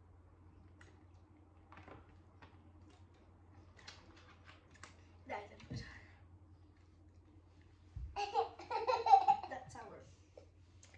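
Mostly quiet with a few faint taps, then near the end a loud outburst of children's voices: a girl's cry at the sour taste of a lemon she has just bitten, with a boy laughing.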